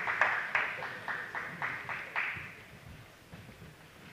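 Spectators clapping together in a steady rhythm, about four claps a second, fading out over the first two and a half seconds. After that only a faint hall murmur remains.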